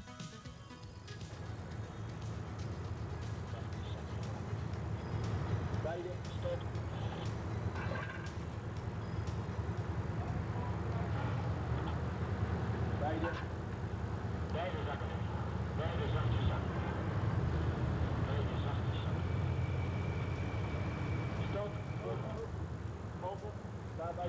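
Steady low diesel rumble from heavy mobile cranes running under load, with short bursts of workers' voices over it.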